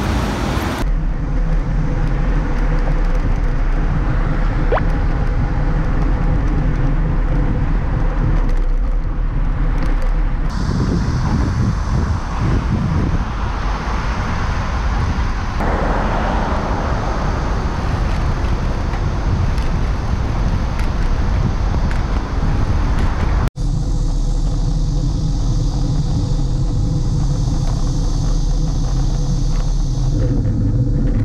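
Road traffic and wind noise picked up by a camera on a moving bicycle, steady and loud. It is cut into several clips, with abrupt changes about a second in and about ten seconds in and a brief dropout near the twenty-third second.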